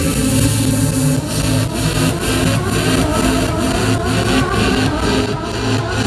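Loud electronic dance music from a live DJ set over an arena sound system, heard from within the crowd, with heavy bass and a steady beat of about two a second that comes in about a second in. The recording microphone is overloaded by the volume, giving popping and distortion.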